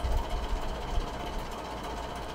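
A low rumble that swells a little, over faint background hiss.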